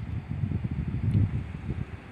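Wind buffeting the microphone: an uneven low rumble that swells to its loudest about a second in.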